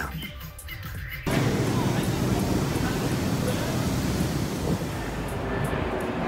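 Street noise under an elevated subway line: a steady roar of traffic and city din that starts abruptly about a second in.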